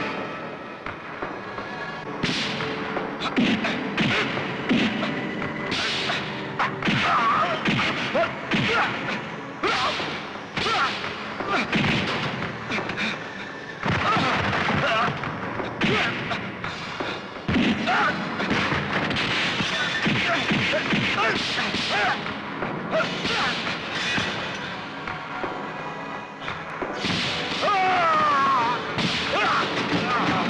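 Film fight-scene soundtrack: dramatic background music with a rapid run of heavy punch and thud sound effects, hit after hit.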